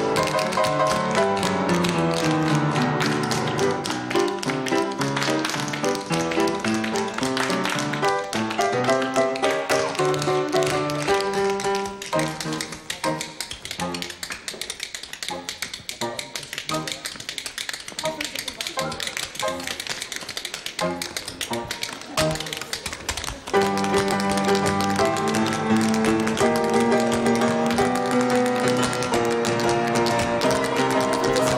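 Tap shoes clattering in quick rhythmic patterns over music. About twelve seconds in, the full accompaniment drops to a sparser piano passage with the taps still heard, and the full music comes back loudly a little after twenty seconds in.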